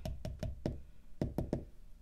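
A measuring spoon knocking lightly against a plastic measuring cup as sticky corn syrup is shaken out of it: three quick knocks, a short pause, then three more.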